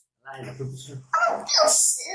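A person's wordless voice: a held low vocal sound, then louder short voiced cries from about halfway through.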